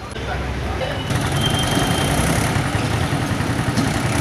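A motor vehicle engine running with a low, uneven rumble, growing louder about a second in.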